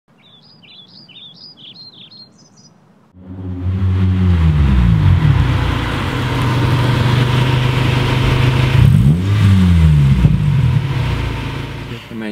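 Birds chirping for the first three seconds, then a car engine cuts in loud as the car drives up. Its note falls at first, holds steady, then rises and falls again about nine seconds in, and eases off toward the end.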